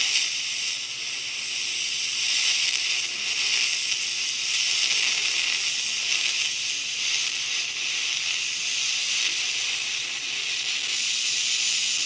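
Spool gun MIG-welding aluminum with 4043 wire: a steady, even hiss from the arc in axial spray transfer, where the wire sprays across the arc instead of shorting into the puddle.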